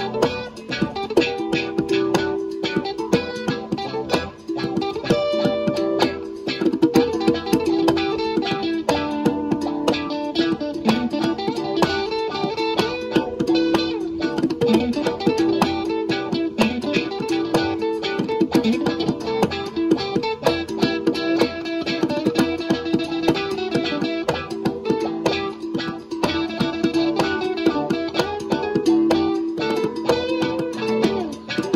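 Guitar playing a continuous passage of plucked notes over sustained tones.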